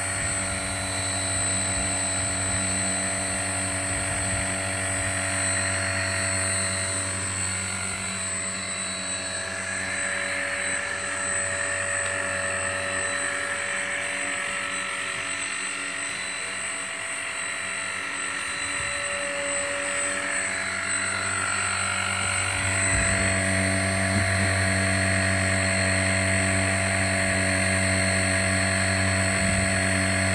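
A steady machine hum made of several constant tones, holding level throughout with only slight wavering.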